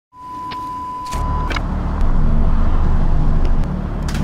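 Intro sound effect for a TV colour-bar test-pattern animation: a steady test-tone beep for about the first second and a half, then a loud low rumble with a few scattered clicks.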